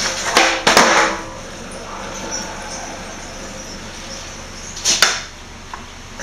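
Skateboard landing and clattering on a bare concrete floor: a short burst of knocks and scraping about half a second in, then one sharp smack about five seconds in.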